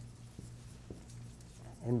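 Marker writing on a whiteboard: faint strokes with a few light taps, over a steady low hum.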